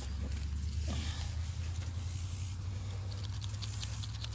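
Faint rustling and crackling of corn husk leaves as an ear of corn is handled and shaken, over a steady low rumble.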